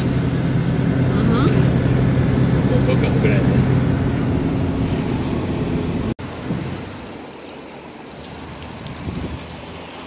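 Steady engine drone and road noise from a moving motorhome. About six seconds in it cuts to a quieter, steady rush of road and wind noise.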